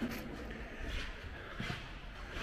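Quiet indoor room tone with a few faint, soft knocks of footsteps as someone walks through a doorway onto a stone floor.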